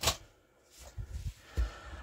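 A sharp click at the start, then a few soft, low thumps and bumps as a pistol-grip RC transmitter is handled and lifted over the bench.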